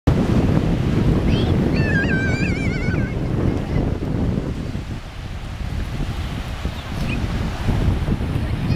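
Wind buffeting the microphone over small waves washing in at the shoreline, a steady low rumbling noise. About two seconds in, a high wavering call rises over it for about a second.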